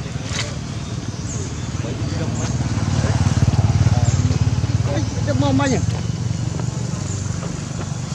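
A steady low rumble that grows louder toward the middle and then eases off, with indistinct human voices in the background, a short burst of voice about five to six seconds in.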